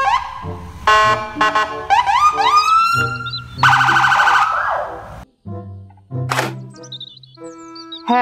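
Police car's electronic siren sounding a series of short rising whoops and chirps, switching between tones, then quieter after about five seconds.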